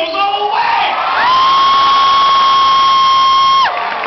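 A single voice shouting one long, high 'woooo' cheer. It rises into the note about a second in, holds it steady for about two and a half seconds, then drops off, over a background of crowd voices.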